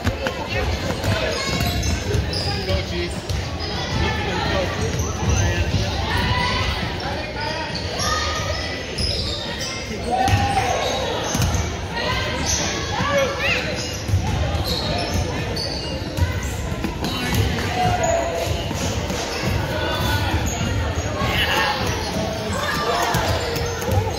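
Several basketballs being dribbled on a hardwood gym floor at once, an uneven run of thuds that echo around the large gym.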